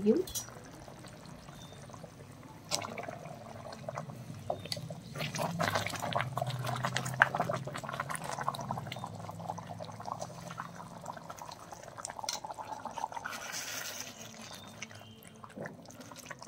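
Thick fish-head curry bubbling in a cast-iron kadai, with metal spoons scraping and tapping against the pan as the fish head is turned over in the gravy.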